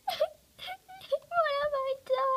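A girl's high-pitched voice whimpering and wailing in short cries, then one long held wail in the second half.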